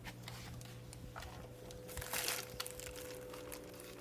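Faint rustling and crinkling, loudest briefly about two seconds in, over a steady low electrical hum.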